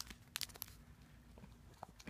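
Faint crinkles and clicks of a plastic-wrapped pack of embossing folders being picked up and handled: a few short ticks about half a second in and one more near the end, over quiet room tone.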